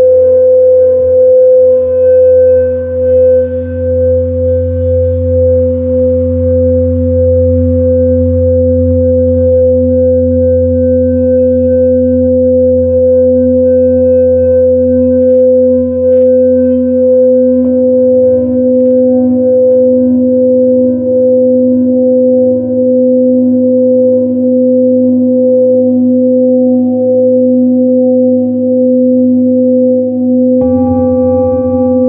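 Tibetan singing bowls sounding in long sustained tones with a slow wavering beat; another bowl's tone joins about 18 seconds in. A thin, steady high trill of bell crickets runs underneath.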